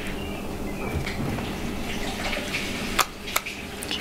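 Fingers working the plastic pull tab of a MacBook Air's battery connector: soft scratching and rubbing handling noise, then a few sharp clicks about three seconds in as the connector is pulled free of its socket to disconnect the battery.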